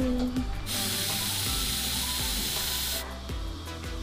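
A steady hiss of spraying air that starts about a second in and cuts off sharply about two seconds later, over background music with a steady bass.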